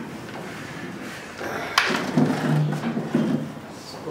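A single sharp click of something hard set down on a carrom board about two seconds in, over low background voices.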